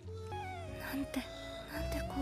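Anime episode soundtrack playing quietly: soft background music with a character's high, gliding, whimpering voice speaking Japanese dialogue.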